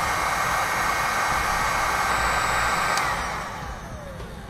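Electric heat gun blowing steadily as it shrinks heat-shrink tubing over a soldered cable terminal. About three seconds in it is switched off and the fan winds down with a faint falling whine.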